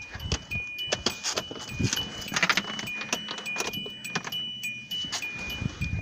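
Car keys jangling with scattered clicks of handling as someone climbs into a car with the engine off, under a repeating high electronic chime that alternates between two pitches.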